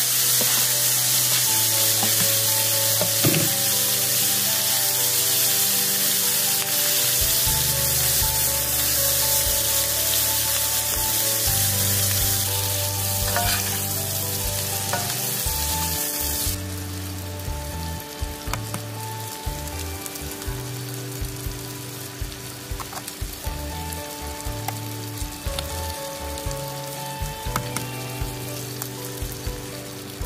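Bacon, tomato and green onion sizzling in a hot cast-iron skillet, stirred with a spatula. The hiss drops abruptly about halfway through, leaving a softer sizzle with small clicks. Soft background music with held notes plays under it.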